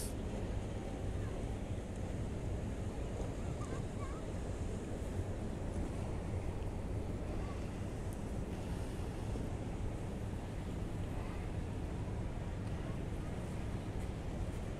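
Steady wind noise on the microphone outdoors, a constant low rush with nothing standing out.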